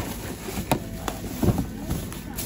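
Tissue paper and plastic wrapping rustling as a pot is lifted out of its cardboard box, with a few sharp knocks and clicks.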